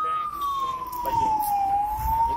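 Fire engine siren wailing as the truck drives past: one long tone that slides down in pitch and begins to climb again near the end. The truck's engine rumble rises as it passes close near the end.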